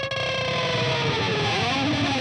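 Distorted electric guitar in a rock mix playback, a held note sliding slowly down in pitch. The part's stereo width is being automated from mono out to wide stereo with a stereo-imager plugin.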